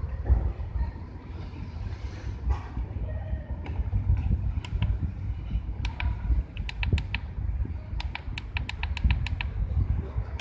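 Keypad presses on a handheld battery tester, a run of short sharp ticks that speeds up to about five a second near the end as a value is stepped up with the arrow key, over a steady low rumble.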